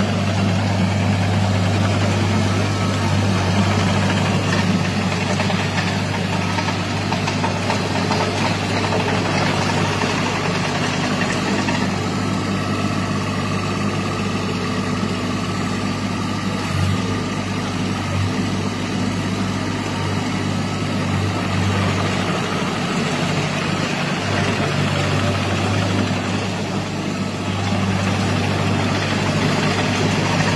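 Derette XC1100 mini tracked loader running steadily with a low drone as it drives on a concrete floor, its rubber tracks in the resonance that shakes the machine on concrete. There is a brief knock about halfway through.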